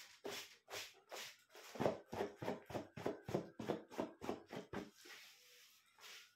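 A man panting rapidly through his mouth, about four to five short breaths a second and speeding up, from the burn of a Carolina Reaper chilli, then easing off to softer breathing near the end.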